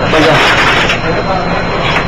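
Restaurant din: indistinct voices and chatter over a steady rushing background noise, with a brief burst of speech at the start.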